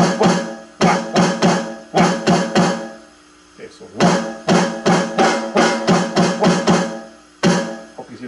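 Electronic drum kit pad struck with one stick in quick repeated strokes, about five a second, with some hits louder than others as accents. The strokes come in three runs split by short pauses, each hit ringing with a pitched tone from the drum module.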